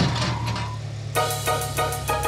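A vehicle engine running with a steady low hum; about a second in, background music with a quick beat comes in over it.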